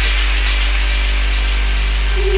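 Live electronic music in a breakdown without drums: a sustained deep bass note under a buzzing, hissing synthesizer texture with a wavering high whine, just after a rising sweep tops out.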